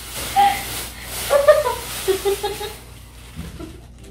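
Crinkling and rustling of a large thin plastic bag being pulled off a big plush toy, with a few brief bits of a woman's voice.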